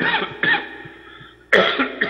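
A man coughing in short, sudden fits, the loudest cough about a second and a half in.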